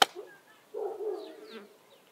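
A sharp click right at the start, then an insect buzzing for about a second.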